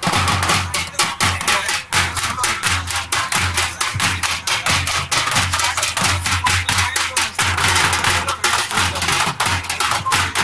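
Dhol drums and other percussion played by a drum troupe: a fast, driving rhythm of rapid stick strikes, several a second, over a repeating booming low beat.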